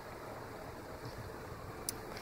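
Faint, steady background noise with no distinct source, and one brief click near the end.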